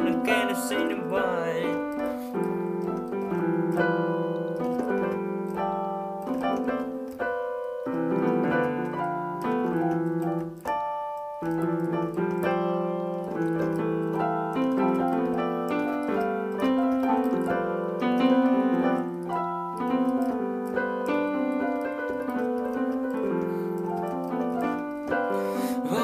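Piano-style keyboard playing an instrumental break of the song: chords under a melody line, with no singing. There are short gaps about seven and eleven seconds in.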